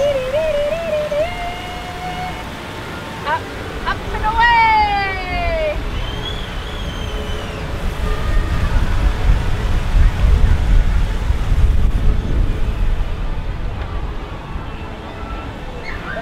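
Wind buffeting the camera microphone as the Dumbo ride car spins and climbs, a low rumble that builds and is loudest in the middle. At the start a voice sings a few wavering notes, and a few seconds in comes one long falling vocal glide.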